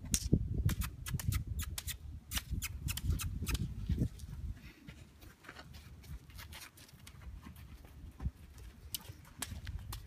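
Footsteps crunching on loose arena sand, a quick irregular run of short crunches, with a low rumble on the microphone during the first four seconds.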